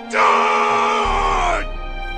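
A man's long pained cry, lasting about a second and a half and sinking slightly in pitch, over steady background music.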